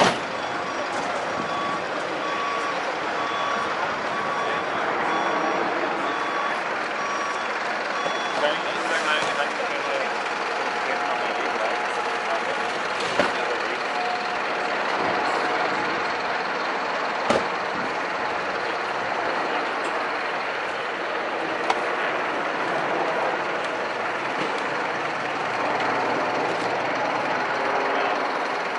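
Busy street ambience: the steady noise of a crowd's voices and traffic. A vehicle's reversing beeper sounds repeatedly through the first eight seconds or so, and a few sharp clicks come later on.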